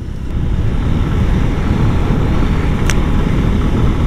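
Steady wind buffeting on the microphone of a motorcycle travelling at road speed, mixed with the bike's running and road noise.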